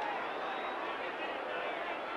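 Stadium crowd noise: a steady din of many voices from a large football crowd.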